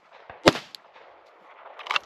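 A single handgun shot about half a second in, sharp and sudden.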